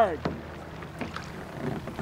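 A kayak paddle and hull brushing through tall marsh grass: a low, quiet rustle with a few faint knocks, after a voice trails off at the very start.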